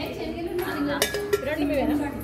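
Dishes clinking, with two sharp clinks about a second in, over chattering voices.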